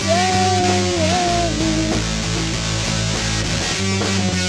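Home-recorded rock band playing, with electric guitar over bass guitar and drums. A held lead note bends about a second in and fades out soon after.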